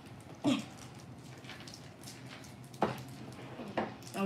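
Faint crinkling and picking at the plastic wrappers of Sour Flush plunger lollipops as they are pried open by hand, with a couple of sharp clicks near the end. About half a second in, a short yelp-like sound falls quickly in pitch.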